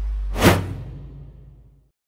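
A whoosh transition sound effect about half a second in, over the deep bass of the intro music as it fades out.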